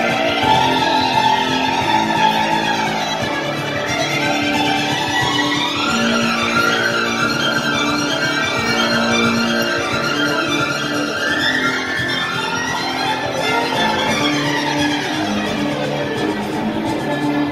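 Music with a violin leading, playing sweeping runs that rise and fall every few seconds over held low notes.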